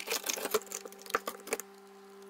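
Plastic ice-lolly moulds set down and shifted on a frosty freezer shelf: a quick run of small clicks, knocks and rustles for about a second and a half, then only the steady hum of the freezer running.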